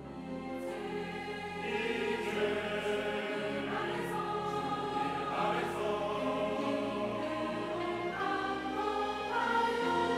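Mixed choir singing a sacred anthem with orchestral accompaniment of strings and woodwinds, swelling louder about two seconds in.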